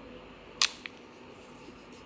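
A plastic sachet of matcha powder torn open: one short, sharp rip about half a second in, then a fainter click just after.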